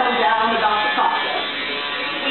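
A woman's voice talking over background music, with a steady buzzing tone underneath. The talking is clearest in the first second.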